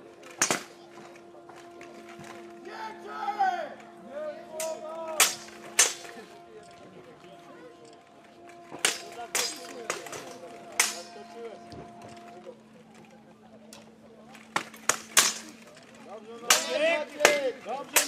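Steel longswords and plate armour clashing in a full-contact armoured sword fight: irregular sharp metallic strikes, coming in quick clusters of two or three blows.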